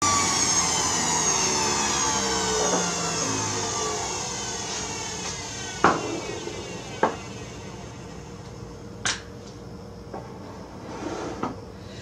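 Centrifugal juicer motor winding down after being switched off: a whine that falls steadily in pitch and fades over several seconds. Three sharp clinks of containers being handled come in the second half.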